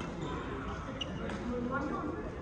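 Badminton racket strings striking a shuttlecock in a fast doubles rally: sharp hits about a second apart, with voices in the hall behind.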